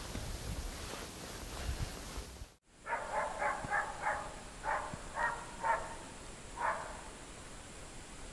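A string of about eight short, faint animal calls, some in quick pairs or threes, from about three seconds in until near the seven-second mark. Before them there is only faint low noise.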